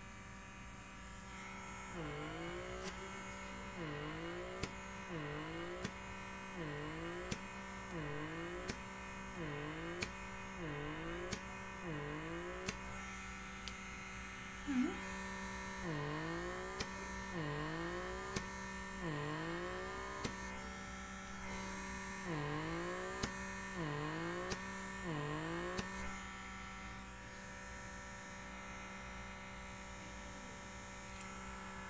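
Blackhead vacuum (pore suction device) running with a steady motor hum. About once a second the pitch sags and climbs back as the suction nozzle grips the skin and is pulled off, with a faint click each time, in three runs with short pauses. A single sharp click about halfway through.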